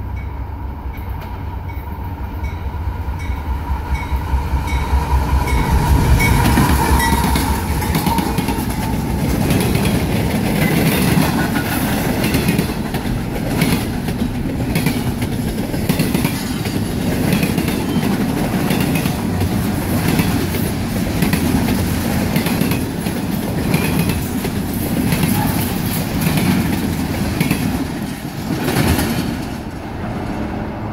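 A CSX GE CW44AC diesel-electric locomotive, with its 16-cylinder GE engine, passing at track speed, loudest about six seconds in. It is followed by double-stack intermodal container cars rolling by with a steady clickety-clack of wheels over the rail joints, until the last car passes near the end.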